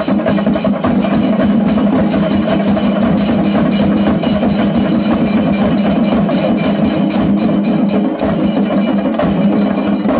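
Chendamelam: an ensemble of chenda drums beaten fast with sticks, with hand cymbals clashing over them. The beating is loud, dense and steady, without a break.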